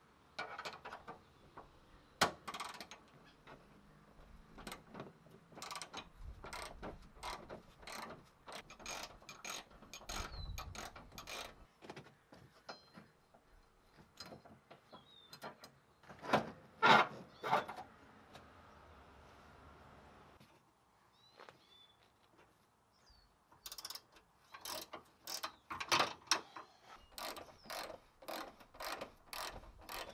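A hand ratchet clicking in quick, irregular runs as the tow hook bolts behind a Mazda Miata's front bumper are turned. The clicking is loudest just past the middle and pauses for a few seconds about two-thirds through.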